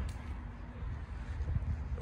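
Low, steady outdoor background rumble on a handheld phone's microphone, with a faint low thump about one and a half seconds in.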